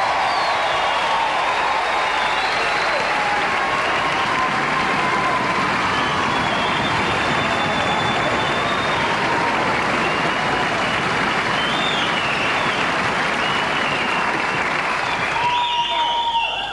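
Large theatre audience applauding, steady and loud throughout, with a few higher calls standing out above the clapping.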